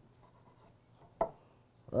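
Chef's knife cutting scotch bonnet peppers on a wooden cutting board: faint cutting sounds with one sharper knock of the blade on the board about a second in.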